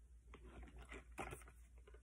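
Faint handling noises: a few light taps and rustles as items are moved about at a fabric backpack, the loudest a little past the middle and near the end.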